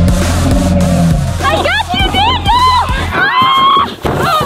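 Background music with a steady low bass for the first three seconds. From about a second and a half in, a person screams and yells in high, wavering cries.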